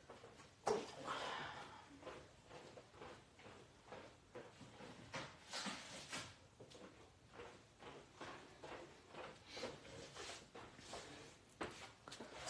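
Faint, scattered knocks, clicks and rustling of things being moved about while a paper trimmer is searched for and fetched, with one sharper knock a little under a second in.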